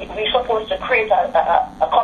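Only speech: a person talking over a telephone conference line, the voice thin and narrow as a phone line makes it.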